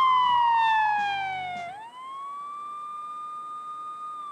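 Siren-wail sound effect ending a TV theme sting. A single pitched wail slides steadily downward while the backing music stops, then swoops back up and holds its pitch.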